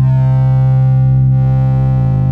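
Oscilloscope-music synthesizer tone: a loud, steady low buzzy drone with many overtones, whose timbre shifts slightly over the two seconds. It is the stereo signal that draws morphing star-shaped outlines on an oscilloscope, so what is heard is the shape being drawn.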